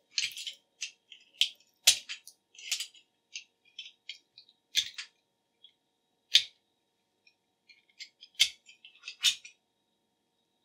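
Hands handling an Ethernet cable and its stripped copper-clad conductors: a string of small, irregular clicks, rustles and scrapes, the sharpest about two, five, six and a half, eight and a half and nine seconds in.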